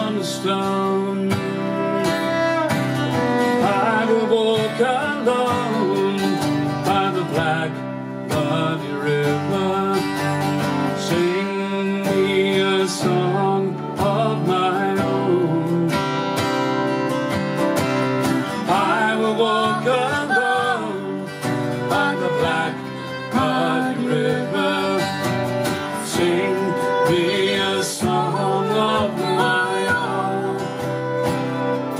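Live acoustic folk music: two acoustic guitars strumming chords while a fiddle carries a sliding, wavering melody over them.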